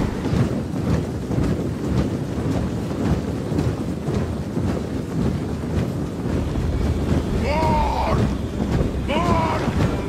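A huge army marching in film sound design: a dense low rumble of many feet and armour with the stamp of steps through it. Near the end come a few loud calls that fall in pitch.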